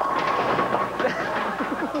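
Bowling ball striking the pins, setting off a sudden crash and clatter of pins, with crowd voices reacting over it.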